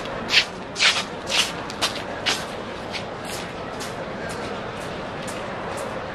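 Aerosol spray-paint can hissing in a string of short bursts, loudest over the first two or three seconds and then fainter and more evenly spaced, over steady background noise.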